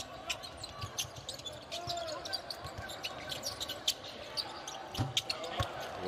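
Basketball dribbled on a hardwood court, a few irregular bounces, with short sneaker squeaks over low arena crowd noise.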